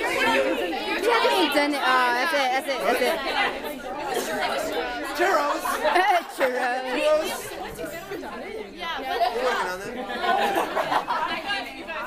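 A group of people chattering and talking over one another, several voices at once.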